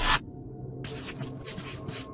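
A short, loud swish that ends just after the start, then, about a second in, a marker pen scratching across a whiteboard in several quick strokes, over a faint steady hum.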